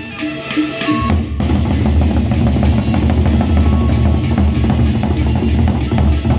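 Gendang beleq ensemble: a short melodic phrase of pitched tones, then the large Sasak double-headed drums come in about a second in, beaten in a dense, fast rhythm with deep bass.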